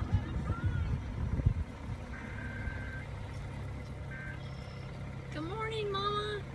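Car engine idling in a steady low hum, after some low rumbling and knocks in the first second and a half as the car comes to a stop. A drawn-out high voice begins near the end.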